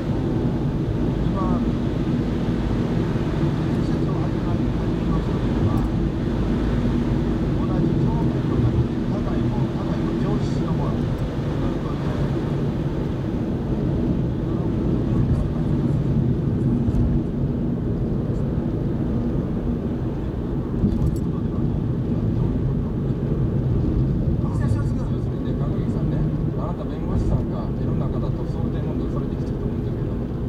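Steady drone of a car's engine and its tyres on a snow-covered road, heard from inside the cabin. Faint talk, apparently from the car radio, comes and goes under it.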